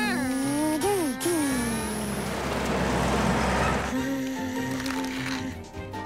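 Cartoon background music over a rumbling whoosh of toy vehicles racing off, lasting about two seconds before it dies away near the four-second mark; pitched, voice-like glides sound in the first second.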